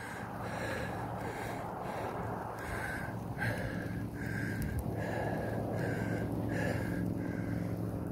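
A cyclist breathing hard in a steady rhythm, a little over one breath a second, over the steady rumble of bicycle tyres on asphalt and wind on the microphone.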